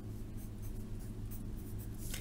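Pencil writing on lined notebook paper, a series of faint short scratchy strokes, over a steady low hum.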